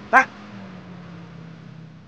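A man says one short word, 'Tak', then a faint steady low hum carries on.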